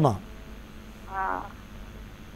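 Speech only: the tail of a man's spoken "Namaste", then a short word from a caller heard over a telephone line about a second in.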